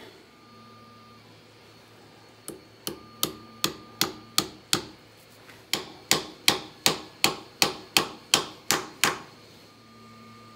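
Hammer blows driving a steel roll pin into the cross hole of a brass hammerhead to lock it onto its aluminium handle. There are two runs of sharp metallic taps at about three a second: about seven, a brief pause, then about ten more.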